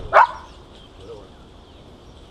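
A dog barks once, short and loud, just after the start.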